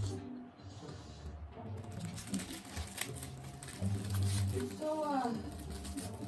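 Television drama playing in the background: music with low steady tones and a voice near the end. Scattered sharp clicks and crinkles of a small clear packet being torn open by hand.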